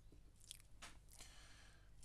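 Near silence with a few faint clicks from fine tweezers handling tiny 3D-printed resin parts.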